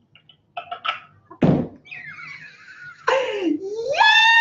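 A single loud thump about one and a half seconds in, followed by a breathy exhale and then a woman's high-pitched squeal of joy that dips and climbs in pitch.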